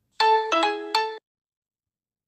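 A short three-note electronic chime jingle, like a ringtone: a note, a lower note, then the first note again, each fading quickly, all within about a second.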